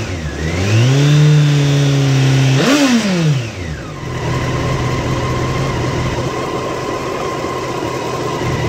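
Honda CBR954RR's inline-four engine, stationary, is revved up and held at raised rpm for about two seconds. It is blipped once more sharply and then falls back to a steady idle for the second half.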